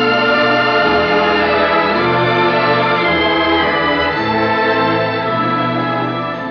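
Instrumental interlude of a song's accompaniment with no singing: sustained, organ-like chords over a bass line that moves to a new note every second or two.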